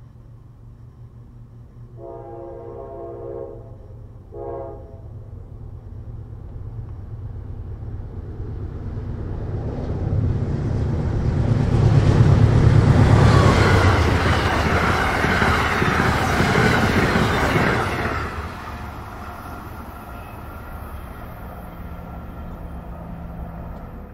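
Amtrak GE P42DC diesel locomotive sounding its horn, one long blast and then a short one. The train then approaches and passes: the locomotive's rumble builds to its loudest about twelve seconds in, then the passenger cars go by and the sound falls away.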